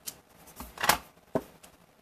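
Clear acrylic stamp block pressed and tapped down onto cardstock on a desk: a soft knock a little under a second in, the loudest, then a sharper click and a couple of faint ticks.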